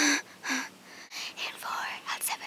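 A person's breathy, whispered voice: a few short sighs, one at the start, another about half a second in, and a longer one near the end.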